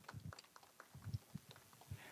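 Near quiet with a few faint, scattered taps.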